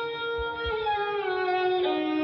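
Lehra, the repeating melodic accompaniment of a tabla solo, on a bowed string instrument: held notes with sliding changes of pitch, and a few faint low thuds from the drums.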